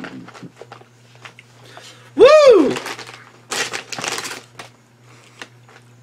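A man lets out one loud 'woo' that rises and falls in pitch, reacting to the heat of a spicy Szechuan chicken potato chip. Around it are small crinkles and clicks, and a short breathy burst follows about a second later.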